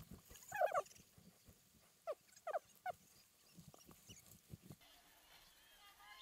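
A dog barking: one bark about half a second in, then three quick barks about two seconds in.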